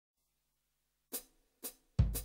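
Two short hi-hat strokes about half a second apart, after about a second of silence, counting in a blues band.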